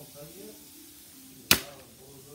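A single sharp snip of scissors about a second and a half in, much louder than anything else, after faint voice sounds.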